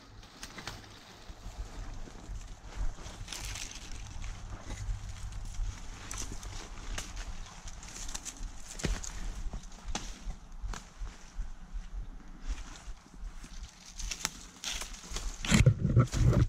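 Footsteps crunching through dry fallen leaves and stems brushing against clothing and the shotgun as a hunter pushes through a dense sapling thicket, irregular crackles and swishes throughout, louder about fifteen seconds in.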